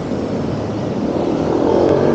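Road traffic passing on a city street: a steady wash of tyre and engine noise, with an engine hum coming in near the end.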